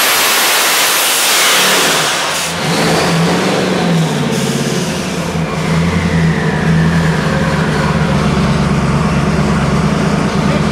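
A twin-turbo 427 cu in small-block Chevy on an engine dyno ends a full-throttle pull near 5,900 rpm about a second in and drops back to idle. A high whine during the pull gives way to a whine that falls slowly as the turbos spin down.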